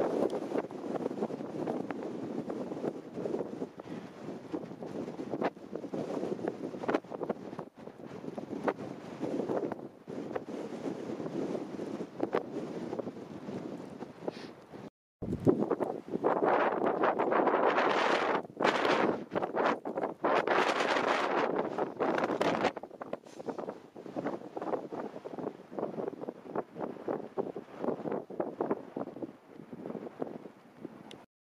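Strong wind buffeting the camera microphone in gusts, louder for several seconds after a brief break about halfway.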